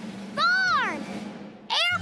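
Cartoon children's voices shouting single-word exclamations back and forth, over a steady background music bed.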